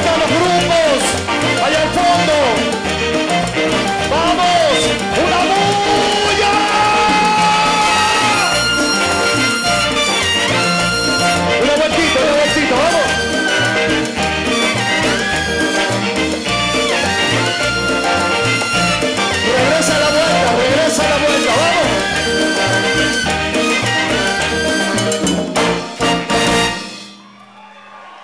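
Live Latin big band playing an instrumental passage, with a brass section over congas and percussion. The music stops abruptly about a second before the end.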